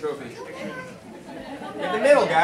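Indistinct chatter of several people talking at once in a large hall, with no clear words.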